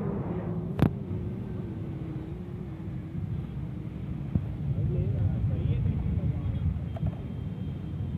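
Steady low outdoor rumble with faint, indistinct voices in the background, and one sharp click a little under a second in.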